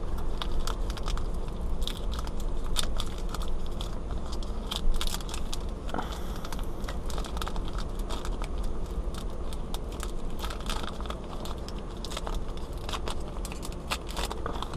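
Trading card pack wrapper crinkling and crackling in the hands as it is torn open, in many small irregular crackles over a steady low hum.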